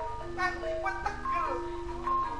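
Gamelan music: metal mallet instruments playing a melody of held, ringing notes, with a voice gliding briefly about a second in.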